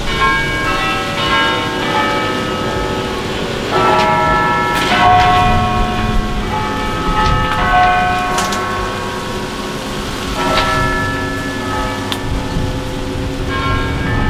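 Bells ringing, struck several times; each strike leaves long ringing tones that overlap the next.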